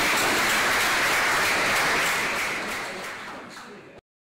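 Audience applauding steadily, fading out over the last second or so.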